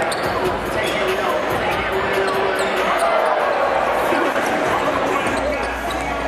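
A basketball being dribbled on a hardwood gym floor, with short high squeaks of sneakers and the voices of a crowd in a large hall.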